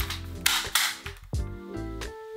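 Drop-side rail of a wooden baby crib being lowered: a sharp click from its latch, a short sliding rattle, then another click as it locks, over soft background music.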